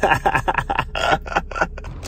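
A person laughing in a quick run of short, breathy bursts.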